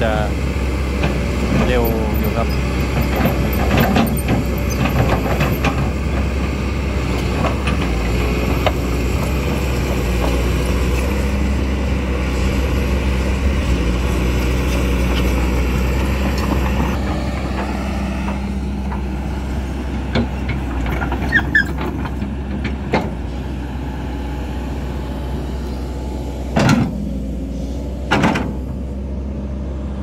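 Kobelco SK200 hydraulic excavator's diesel engine running steadily under working load as the machine digs. The engine is running cool, which the operator says keeps it working fast. It eases off slightly past the middle, and a few short, sharp knocks come in the last ten seconds.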